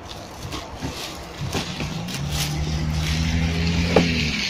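A car engine running close by, a low steady hum that grows louder from about halfway through. Light rustling of grocery packaging being handled.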